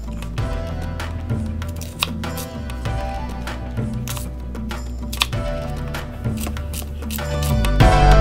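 Background music with held tones, over which a knife cutting celery stalks taps sharply on a cutting board a handful of times at irregular intervals.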